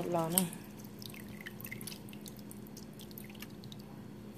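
Hand stirring and scooping soaked purple rice in a bowl of water: water and wet grains dripping and splashing back into the bowl as a run of many small, irregular drips.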